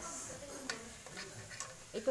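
A few sparse light metallic clicks from metal tongs touching a tabletop barbecue grill while food is turned.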